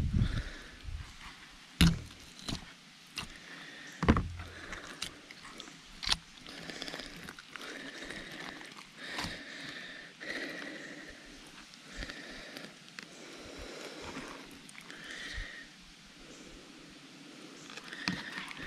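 A fillet knife cutting through a snakehead and hands pulling apart its belly and guts on a cardboard sheet: scattered soft scrapes and wet handling noises, with a few sharper knocks about 2, 4 and 6 seconds in.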